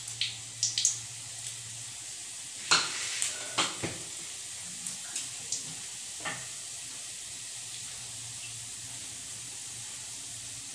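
Coriander and cumin seeds sizzling in hot oil in an aluminium kadai: a steady hiss with scattered sharp crackles, most of them in the first four seconds.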